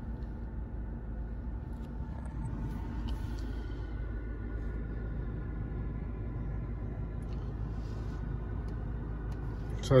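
Steady low rumble inside a car's cabin, with faint higher tones held over it.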